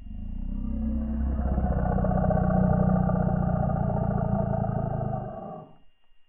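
A deep, rumbling roar sound effect from a logo intro. It swells over the first second, holds, then fades away shortly before the end.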